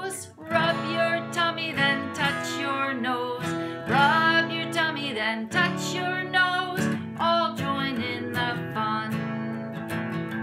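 A woman singing a children's song while strumming an acoustic guitar in a steady rhythm.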